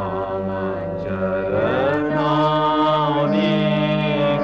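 A Gujarati devotional song: a voice sings long held notes that glide into one another over a steady low drone accompaniment.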